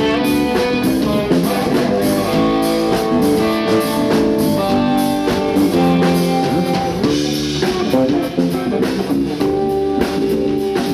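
Live blues band playing: electric guitar picking changing notes over bass guitar and a steady drum-kit beat, with no singing.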